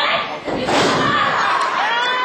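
A wrestler dropping from the ring ropes onto her opponent and the wrestling ring's canvas: a slam of bodies on the ring mat about half a second in, with crowd voices shouting around it.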